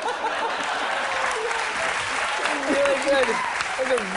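Studio audience applauding, with laughing voices over the clapping in the second half.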